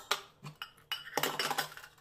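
Stainless steel utensils (tumblers and a compartment plate) clinking and clanking against each other as they are handled, a string of sharp ringing knocks.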